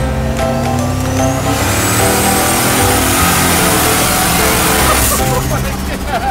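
Turbocharged 440 big-block Dodge truck accelerating, heard from inside the cab over background music. Its rising engine note has a thin high turbo whistle climbing with it. The engine sound cuts off abruptly about five seconds in.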